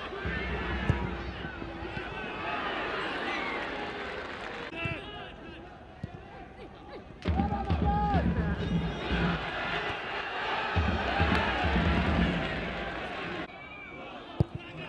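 Football match ambience: shouting from players and a sparse stadium crowd, with the occasional thud of the ball being kicked. The sound jumps abruptly twice where the highlights are cut.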